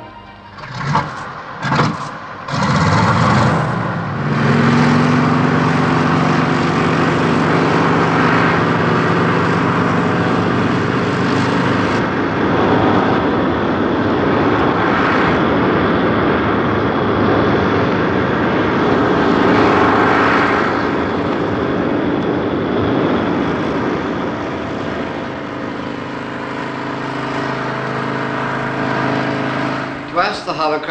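Saunders-Roe SR.N1 hovercraft's piston engine and lift fan running loud and steady, with a dense rushing noise over a steady low hum. A few sharp knocks come in the first couple of seconds, the sound comes up to full about three seconds in and eases off somewhat near the end.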